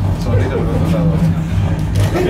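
Indistinct murmur of several voices in a room over a steady low hum, with a couple of brief clicks near the end.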